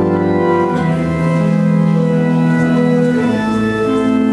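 Church organ playing offertory music: slow, sustained chords that change every second or so.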